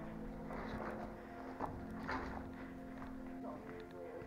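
Footsteps crunching on rubble and debris, a few irregular steps, over steady background music.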